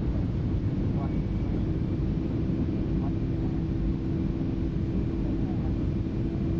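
Steady cabin noise inside a Boeing 757 airliner: engine and airflow noise with a low drone running through it, with faint voices under it.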